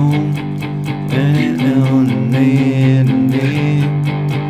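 Electric guitar, a Stratocaster-style instrument, playing a single-note lead line with string bends over a sustained low chord that changes about a second in.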